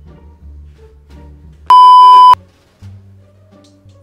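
A single loud, steady electronic bleep tone, the kind dubbed in by an editor, lasting just over half a second near the middle, over a quiet background music bed.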